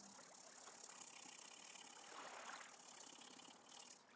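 Faint scratching of a coloured pencil shading on paper, over a steady background hiss.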